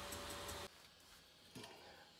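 Independent-dual-extruder 3D printer running, a steady hiss with a thin whine, which cuts off abruptly under a second in. What follows is much quieter, with one faint click about a second and a half in.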